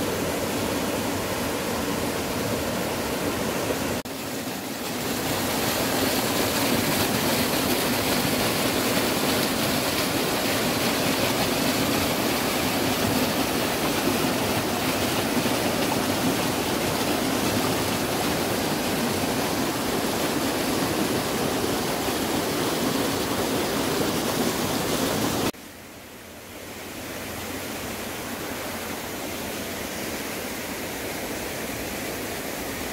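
Mountain stream running over granite rocks and a small cascade, a steady rush of water. It drops suddenly to a quieter, more distant rush near the end.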